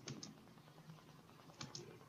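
A few faint clicks of computer keys over near silence: two near the start and a couple more about a second and a half in.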